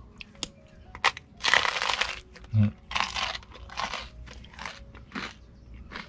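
Crunching bites and chewing of crisp cream cheese toast: a run of crunches about every half second to second, the first and longest about a second and a half in.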